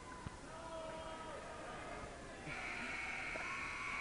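Faint crowd voices and shouts echo in a school gymnasium. About two and a half seconds in, the end-of-game buzzer starts: a steady, high electronic tone that holds as time runs out.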